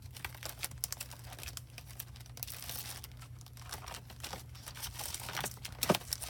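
Clear plastic stencil sleeves rustling and crinkling as a stack of stencils is flipped through and shifted by hand, with irregular small clicks and a sharper tap near the end.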